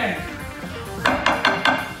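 A spoon scraping and knocking against a stainless steel skillet as dirty rice is turned out into a ceramic platter: about four quick scrapes about a second in.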